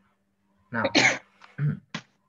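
A person sneezes once, a sharp burst about a second in, just after a short spoken word, with a brief vocal sound after it and a single click at the end.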